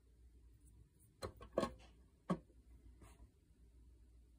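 A few short, light clicks and knocks, four in all, the middle two the loudest: the clear plastic draft shield of a digital powder scale being handled and closed over the weighing pan.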